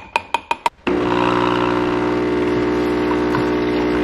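A spoon clinks against a ceramic mug a few times, then about a second in an espresso machine's pump starts a steady hum as it runs hot water into the mug.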